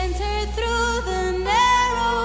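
Music: a woman sings a slow, held melody with vibrato over a sustained low bass note, rising to a higher held note about one and a half seconds in.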